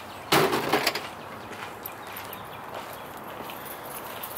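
A hard drum case being shoved into a stack of cases in a van's cargo area: a quick cluster of knocks and a scrape lasting about half a second, shortly after the start, then only faint outdoor background.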